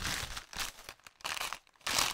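Grey plastic courier mailer bag crinkling as it is handled, in a few short bursts.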